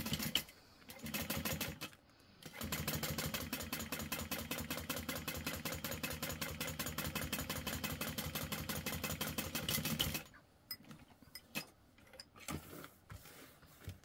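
Juki industrial sewing machine stitching through layers of vinyl. Two short bursts of backstitching come first, then a steady run of rapid, even stitching that stops about ten seconds in, followed by a few light clicks.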